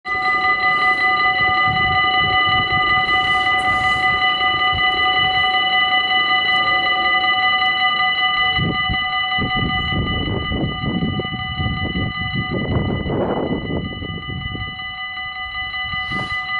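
Level crossing warning bells ringing continuously, a steady electronic bell tone. From about halfway in, a low irregular rumble joins the ringing.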